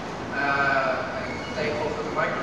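A man speaking in a gymnasium hall, his words unclear, in two short phrases with a pause between.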